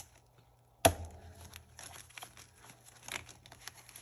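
A ring binder's metal rings snap open with one sharp click about a second in, followed by crinkling and rustling of a stack of plastic cash envelopes being handled and lifted off the rings.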